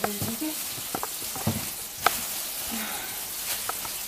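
Thin plastic shopping bag rustling and crinkling as hands work inside it, with a few sharp crackles.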